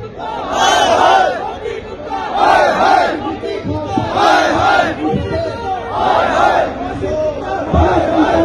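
A crowd of protesters chanting a slogan in unison, many voices shouting together about once every two seconds.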